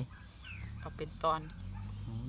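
Mostly speech: a woman says a few words after a short, quieter pause.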